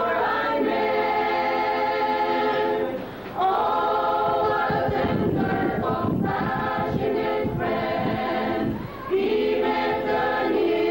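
Mixed church choir of young men and women singing together in long held notes, with two brief pauses between phrases, about three seconds in and again near the end.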